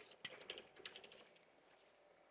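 Faint clicks of chalk tapping on a blackboard during the first second, then near silence.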